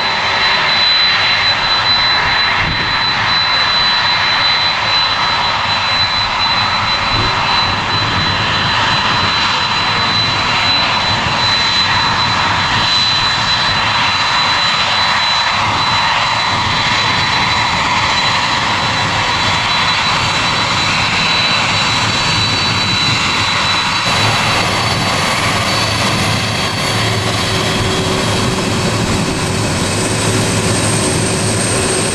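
Qantas Boeing 747-400ER's jet engines running loud and steady: a high, constant fan whine over a broad rush of jet noise. The sound changes abruptly about two thirds of the way through, after which the whine drops out and a lower rumble comes up.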